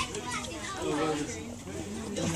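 Indistinct background chatter of children's voices among spectators, with no single clear speaker.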